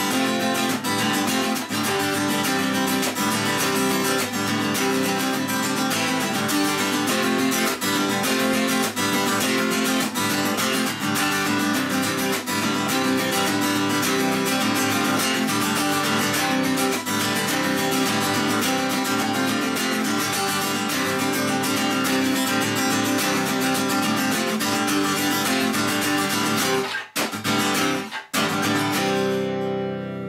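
Acoustic guitar strummed in steady rhythmic chords, with no singing. Near the end the strumming breaks off twice, and a final chord rings out.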